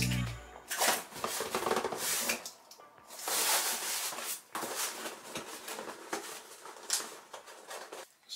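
Cardboard box and small packets being handled and unwrapped: a run of irregular rustles, scrapes and light knocks, busiest about halfway through, over quiet background music.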